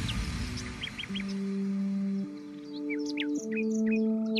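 Background music: soft sustained chords that change about every second, with bird chirps over them, after a louder passage fades away at the start.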